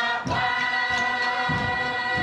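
A group of voices singing together for a traditional dance, holding one long steady note, with a few dull thumps underneath.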